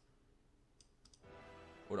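A few faint computer-mouse clicks, then, about a second and a quarter in, a quiet held chord of intro music sets in.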